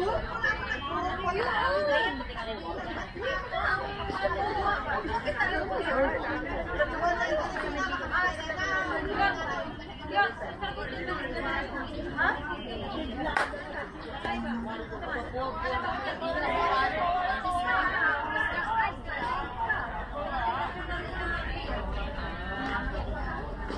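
Several people talking at once, their voices overlapping in steady chatter, with one sharp click about 13 seconds in.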